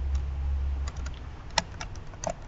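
A handful of sharp, irregular clicks, like keys being tapped, over a low hum that drops away a little under a second in.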